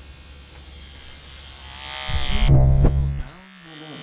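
Electric hair clippers buzzing steadily as they trim a neckline. The buzz swells much louder about two seconds in, then drops away sharply a little past three seconds.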